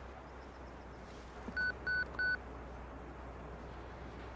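Three short, evenly spaced electronic beeps about a second and a half in, each a single steady high tone, over a faint steady background hiss.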